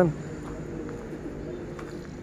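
A dove cooing faintly, a few low notes.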